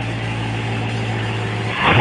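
2014 Corvette Stingray's 6.2-litre LT1 V8 idling steadily. Near the end a sudden loud burst of sound cuts in over it.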